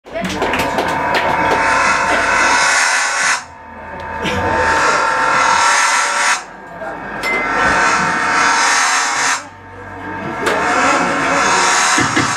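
Live rock band with electric guitar and bass playing a loud, noisy figure that builds for about three seconds and cuts off sharply, four times over.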